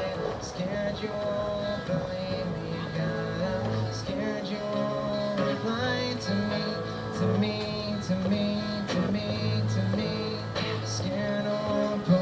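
Little Martin acoustic-electric guitar amplified through a PA, playing an instrumental passage: strummed chords over a repeating low-note pattern, layered with a loop pedal.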